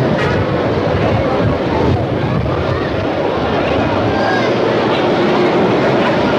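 Busy street ambience: the chatter of a crowd over a steady rumble of traffic, with no one voice standing out.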